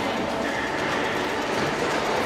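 A horse cantering on sand arena footing: muffled hoofbeats over steady background noise.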